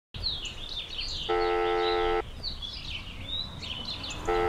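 Telephone ringback tone: one steady tone just under a second long, about a second in, as an outgoing call rings waiting to be answered. Birds chirp throughout.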